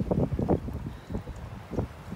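Wind buffeting the microphone in gusts, low muffled blasts loudest in the first half second, with weaker ones later.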